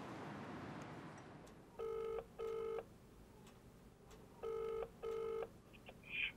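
British telephone ringback tone heard through a phone handset: two double rings ("brr-brr"), the second pair about two and a half seconds after the first, the sign that the called phone is ringing at the other end.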